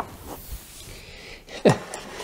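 Mugs being handled on a wooden table: a light knock as one is set down, then quiet handling, and a short breathy vocal sound near the end.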